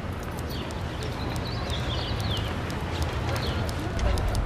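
Outdoor street ambience: a steady low rumble with short high chirps and scattered light clicks.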